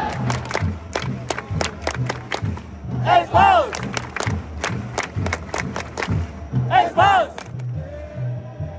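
Football supporters' chant in the stands: a steady drum beat about two a second with sharp hits on the beat, and the crowd shouting together in two long rising-and-falling calls, about three seconds in and again near the end.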